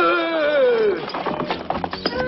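Carriage horse whinnying once, its pitch wavering and falling over about a second, followed by a run of hooves clattering.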